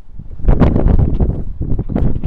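Loud rumbling noise on the camera microphone from wind and handling, starting about half a second in.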